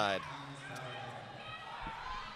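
Faint arena background during a roller derby bout: a murmur of distant voices and the noise of skaters on the hard floor in a large hall, with a soft low thud near the end.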